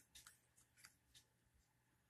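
Near silence, with a few very faint clicks in the first second from fingers handling the plastic case of a small digital clock.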